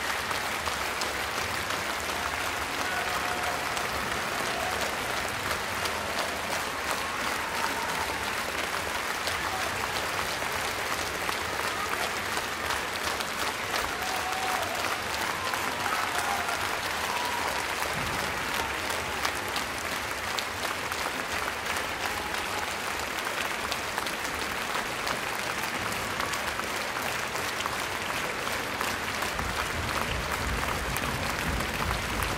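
Large concert-hall audience applauding steadily.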